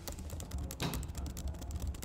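Fast typing on a computer keyboard: a quick, uneven run of key clicks.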